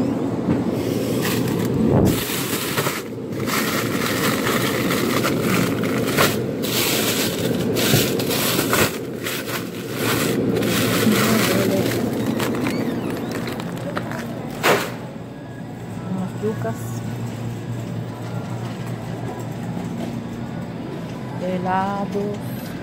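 Plastic bags of frozen yuca crinkling and crackling as they are handled, with a sharp knock about two seconds in and another about two-thirds of the way through. After that comes a steadier supermarket background with music.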